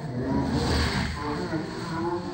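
A woman crying and whimpering in fear of a vaccine injection, over the voices of people around her.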